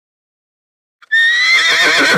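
A horse whinnying loudly. The call starts about a second in on a high, slightly rising pitch, then breaks into a rapid quavering.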